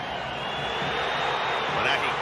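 Stadium crowd noise from a football match, swelling slightly as the attack builds, with a thin, high, steady whistle-like tone running through it.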